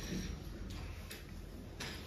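Quiet room tone with a low steady hum and a few faint, irregular clicks.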